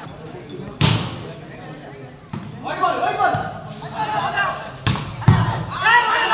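Volleyball struck by hand: a sharp smack about a second in and two more close together near the end, the last of them the loudest, with onlookers shouting in between.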